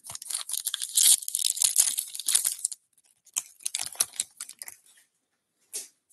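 Wrapper of a 2024 Topps Big League baseball card pack being torn open, with crackly tearing and crinkling for about three seconds. A few softer crinkles follow as the pack is handled.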